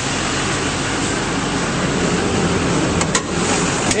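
6.6L Duramax LMM V8 turbo-diesel idling steadily and running smoothly, with two sharp clicks near the end.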